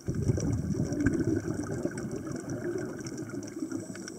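A scuba diver's exhaled breath bubbling out of a regulator underwater: a loud, crackling bubbling rumble that begins suddenly and eases off a little toward the end.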